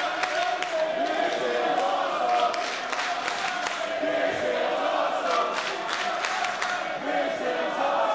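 Wrestling crowd chanting in unison, with scattered hand claps.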